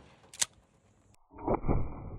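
A short sharp crack about half a second in from a 12-gauge shotgun firing a less-lethal round into a water jug. After a sudden cut, a muffled, dull gunshot and impact follows with a fading tail.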